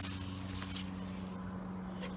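A steady low mechanical hum in the background, with faint rustling and handling noise as the camera moves through the tomato plant's leaves.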